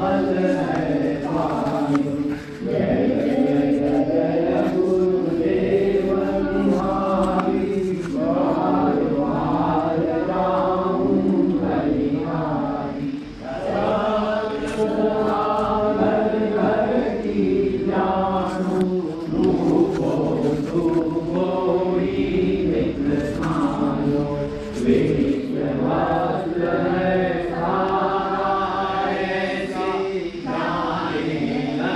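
Several voices chanting a slow Hindu devotional mantra together, in a continuous sung line with no pauses.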